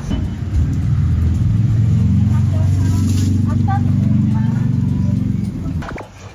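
A motor vehicle's engine running close by on the street, a loud low rumble that holds steady for about five seconds and stops abruptly just before the end.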